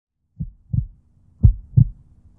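A heartbeat sound effect: two pairs of deep thumps, lub-dub, about a second apart, over a low steady tone.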